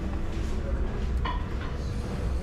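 A steady low hum of dining-room ambience, with a couple of faint clicks a little over a second in.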